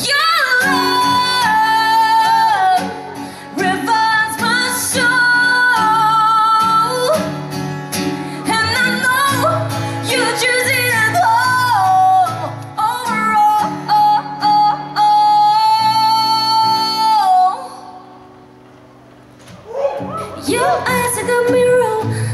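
A woman singing live into a microphone to an acoustic guitar accompaniment. She holds a long note that cuts off about seventeen seconds in, followed by a quiet lull of about two seconds before the song picks up again.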